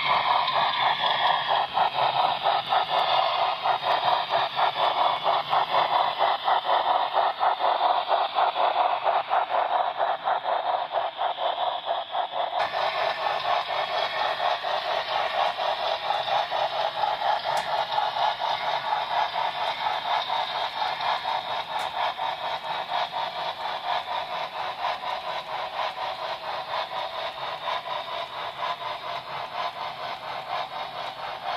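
Sound decoder of a Broadway Limited Imports Great Northern S-2 4-8-4 model steam locomotive playing rapid, steady exhaust chuffs, synchronized with the driving wheels, through its small onboard speaker as the model runs. The chuffing grows slightly quieter toward the end.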